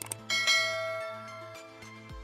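A short mouse click, then a bell sound effect that rings out and fades over about a second and a half, as the subscribe animation's bell icon is clicked. Background music with a steady beat runs underneath.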